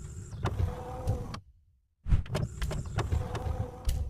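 Sound effects for an animated logo intro: mechanical clunks and sharp clicks in two runs, with a brief silence about a second and a half in.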